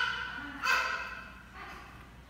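High-pitched vocal cries from a child, two short ones under a second apart, then a fainter one.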